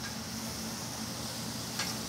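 Barbecue sauce sizzling steadily on ribs over the open flame of a hot grill, the sauce caramelizing onto the meat; a brief faint click near the end.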